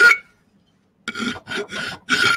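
Flat hand file scraping the edge of an aluminium workpiece held in a bench vice, taking off the burrs. One stroke ends right at the start, then after a short pause three quick strokes follow from about a second in.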